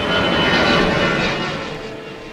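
Twin-engine jet airliner passing low overhead: a dense rush of engine noise with a thin, steady high whine, fading away in the second half.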